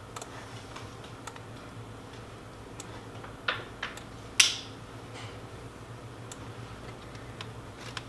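Scattered clicks of a computer mouse and keyboard, the two loudest about three and a half and four and a half seconds in, over a faint steady low hum.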